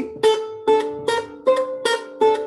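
Renaissance lute played with the fingers: a quick run of plucked notes, about six in two seconds, each ringing on briefly. It is played as a right-hand practice exercise that keeps the plucking movements deliberately small and constrained to build speed.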